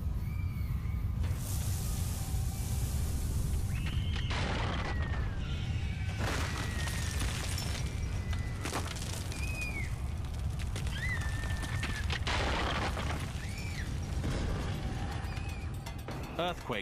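Earthquake rumble: a deep continuous roar with several loud crashes of falling debris, under dramatic music. Short high cries sound over it several times.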